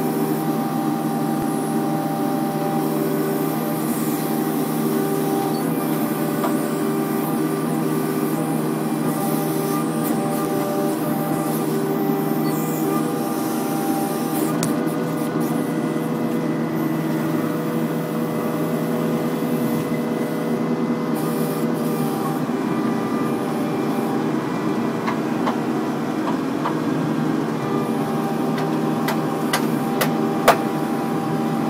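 Kubota mini excavator's diesel engine running steadily under hydraulic load as the bucket works, with a few light clicks near the end.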